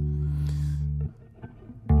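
Electric guitar in drop D tuning: low notes ring, with a short scrape of fingers on the strings about half a second in. The notes are cut off about a second in, and a new chord is struck just before the end.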